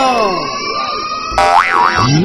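Cartoon-style comic sound effect. A falling pitch glide gives way to a held tone, then about one and a half seconds in a short boing-like tone swings up and down twice.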